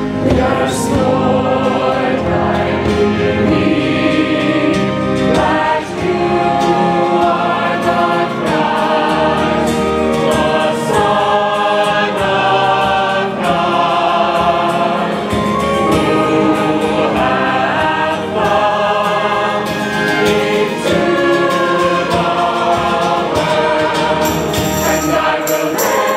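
Mixed choir of men and women singing a liturgical hymn, accompanied by acoustic guitar and other folk instruments.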